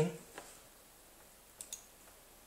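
Two quick, sharp clicks at a computer about a second and a half in, as the program is launched, over faint room tone.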